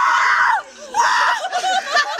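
A woman screaming twice, a long cry that falls away at its end and a shorter one about a second in, at the shock of a bucket of ice water just poured over her.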